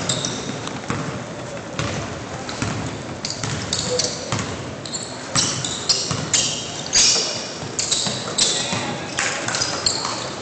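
Indoor basketball play on a hardwood gym court: a ball bouncing, with sneakers squeaking in short high chirps and footfalls knocking on the floor throughout, echoing in the large hall.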